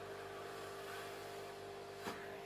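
Faint room tone: a steady low hum under soft background hiss.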